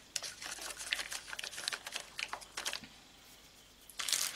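Plastic-wrapped sticker packs being handled and pushed into a plastic organiser tray: a string of small irregular clicks and crinkles that die away about three seconds in.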